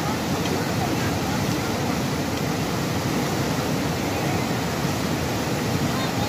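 Fast, turbulent mountain river rushing over rocks in whitewater, a loud, steady rush of water with no break.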